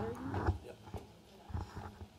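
A microphone being handled: a few dull knocks, with a brief spoken "yep".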